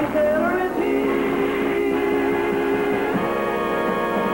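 Closing theme music of the cartoon, moving into long held chords about a second in.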